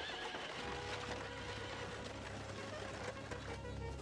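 A horse neighing near the start, over sustained low notes of soundtrack music.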